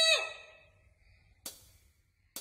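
A girl's held sung note ending the ballad, wavering slightly, slides down in pitch just after the start and dies away into near silence. About one and a half seconds in, a single short, sharp tick sounds.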